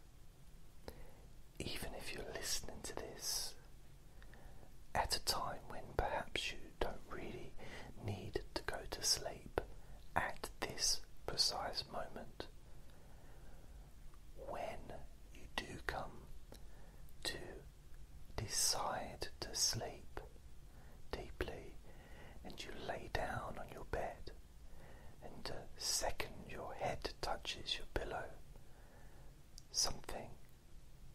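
A person whispering in soft phrases broken by short pauses, with strong hissing on the s sounds.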